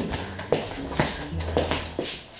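Footsteps on a hard floor, about two steps a second, with background music under them.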